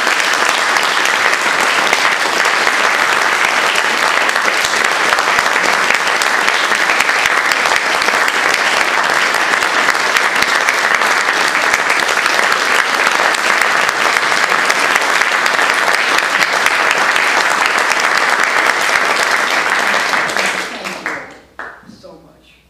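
Audience applauding steadily, dying out in a few last scattered claps near the end.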